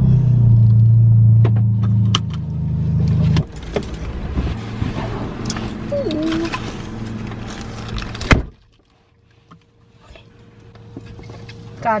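Turbocharged four-cylinder engine of an MK7 Volkswagen GTI running at low revs, heard from inside the cabin, dropping away sharply about three seconds in. After that come scattered handling clicks and rustles, and a single loud knock past the middle. The rest is quiet apart from a faint steady hum.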